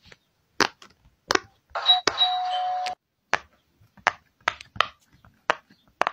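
Silicone pop-it fidget toy bubbles pressed by fingers, a dozen or so sharp pops at irregular spacing. About two seconds in, a ding-dong notification chime sounds for about a second.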